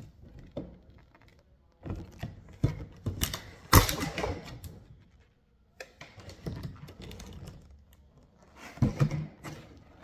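A 1997 Lincoln Mark VIII's plastic rear tail light housing being handled and set down: irregular clicks, taps and knocks, the loudest a little under four seconds in.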